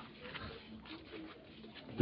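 Faint, low cooing of a dove in the background, a few soft calls.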